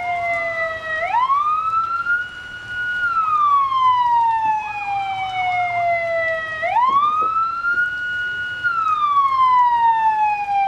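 Police car siren on a slow wail. Twice the pitch climbs over about a second and a half, holds high for a moment, then slides slowly back down.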